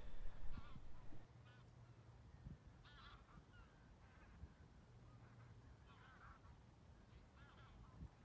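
Faint geese honking: about half a dozen short calls spaced a second or two apart, over a low steady background, after a brief noisy rumble in the first second.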